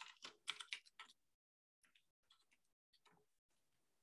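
Faint typing on a computer keyboard: a quick run of keystrokes in the first second, then a few scattered, softer ones that stop a little after three seconds in.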